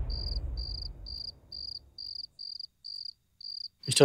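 Crickets chirping in an even rhythm, about two and a half short chirps a second, over a low rumble that fades away in the first second or so. Near the end a brief, loud swooping sound effect cuts in.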